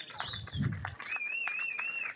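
A small crowd applauding with scattered hand claps. In the second half someone whistles a high, wavering note.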